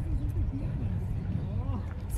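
A woman singing softly, her voice faint and wavering, over a steady low rumble.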